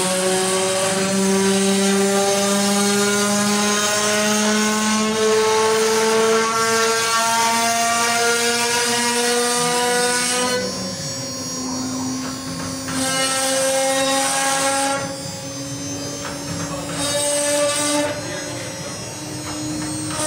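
CNC router spindle whining as its bit cuts a design into a wooden door panel, with the hiss of the cutter in the wood. The whine's pitch drifts slowly upward over the first half. The cutting hiss drops away twice, about halfway through and again a few seconds later, while the whine runs on.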